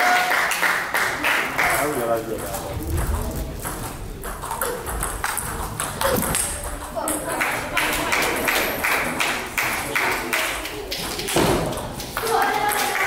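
A table tennis rally: the ball clicking in quick, regular succession as it strikes the bats and bounces on the table.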